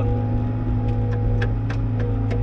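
Bobcat T66 compact track loader's diesel engine running steadily, heard from inside the cab as a constant low drone, with a few faint clicks.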